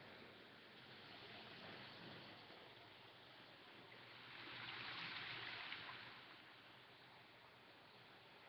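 Faint hiss of running water, swelling for a second or two about halfway through.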